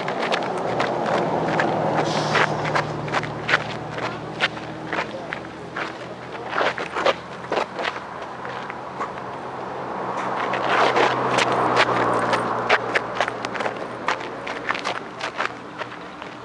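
Shoes crunching and scuffing on gravel in quick, irregular clicks as a man dances, over a steady low hum. A wider noise swells and fades twice, near the start and again about ten seconds in.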